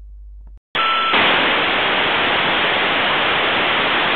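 A low hum cuts out, and under a second in a loud burst of telephone-line static hiss begins and holds steady, with a brief steady tone at its onset.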